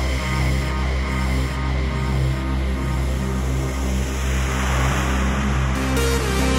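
Progressive psytrance track: a deep sustained bass and held synth chords, with a noise swell building up in the second half.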